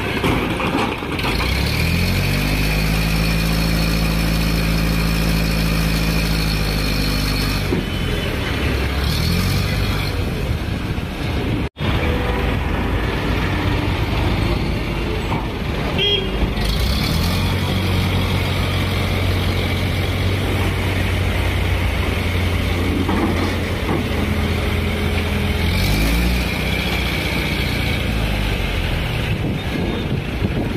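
Heavy diesel engines running: a truck-mounted crane working close by and trucks passing on the highway, the engine note holding steady for several seconds at a time. The sound cuts out abruptly for an instant about twelve seconds in.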